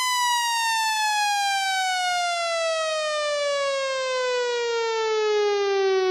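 A single electronic tone sliding slowly and steadily down in pitch, a falling sweep effect marking the change from one song to the next in a DJ-mixed forró album.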